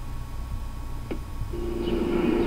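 Low steady hum with a single faint click about a second in. Near the end a steady low tone comes in as the played video's soundtrack starts.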